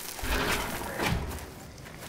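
Steaks sizzling and crackling on a barbecue grill, with two soft low thumps about a quarter of a second and a second in.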